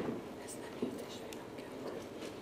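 Quiet room tone with faint whispering and a few soft rustles and clicks of papers and pens being handled.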